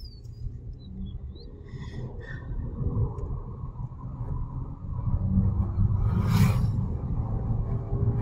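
Low rumble of a moving vehicle driving down the road, its engine and tyre noise growing louder about halfway through, with a brief hiss shortly after.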